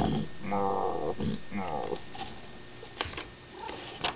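A person's voice imitating a cow's moo: one drawn-out call in the first second, followed by a couple of shorter vocal sounds, then a few faint clicks.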